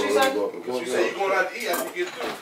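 Indistinct voices talking in a small room, with light clinking.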